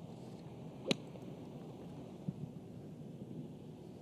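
A golf club striking the ball on a full approach shot from the fairway: one sharp, crisp crack about a second in, over steady open-air background hiss.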